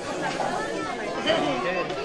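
Several people talking at once: overlapping chatter of a crowd of guests.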